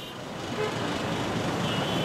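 Road traffic noise from slow, congested traffic of buses and trucks, with a vehicle horn sounding near the end.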